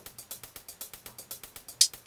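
Quiet, rapid electronic ticking from a Novation Circuit Tracks beat, about eight even ticks a second, with a louder hit near the end.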